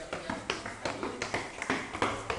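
Irregular light taps and knocks, two or three a second, as the handheld recording device is carried and moved around.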